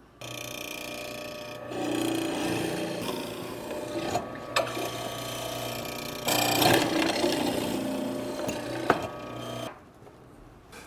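Benchtop hollow-chisel mortiser running, its square chisel and auger boring mortises into an ash leg blank. The steady motor grows louder as the chisel plunges into the wood, twice, with a few sharp clicks.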